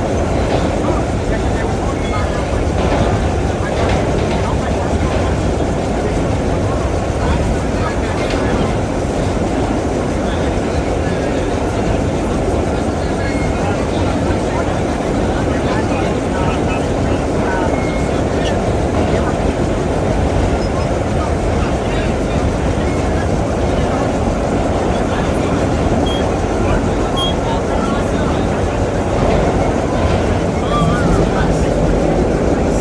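Vintage BMT Standard subway car running at speed through a tunnel, heard from inside the car. The steady, loud rumble of its wheels and running gear on the rails does not let up.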